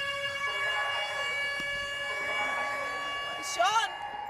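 Rocket-alert (Code Red) warning siren sounding one steady, unwavering tone. A voice breaks in briefly near the end.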